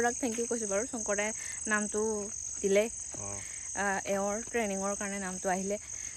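Night insects chirring in one steady, high-pitched band, under a woman talking.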